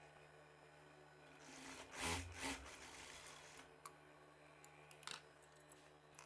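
Near silence, broken about two seconds in by two short, soft rustles of a silk blouse being handled and shifted, then a faint tick or two.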